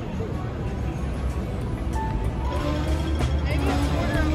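Busy city street: crowd chatter and traffic noise under background music, with steady melody notes coming in about halfway through.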